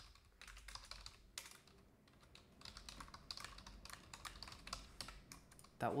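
Typing on a computer keyboard: a run of quick, irregular keystrokes, with a brief lull a little before two seconds in.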